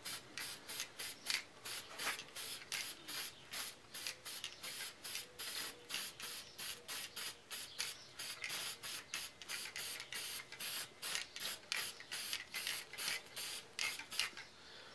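Aerosol can of Marsh stencil ink spraying black ink in rapid short bursts, about three or four hisses a second, over paper layout letters on a wooden sign board.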